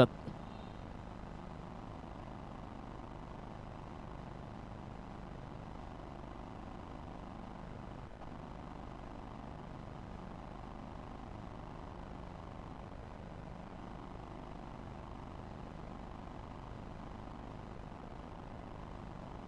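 Faint, steady background noise with no distinct events: a low ambient hum or rumble, like distant traffic or machinery.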